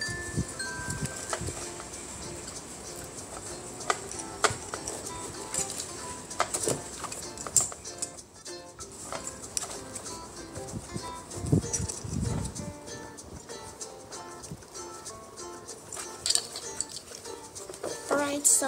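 Light, chime-like background music plays throughout. Over it come scattered clicks and knocks of a plastic harness chest clip and webbing straps being handled, with a low cluster of knocks about two-thirds of the way in.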